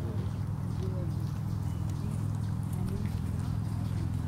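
Faint, distant voices over a steady low rumble.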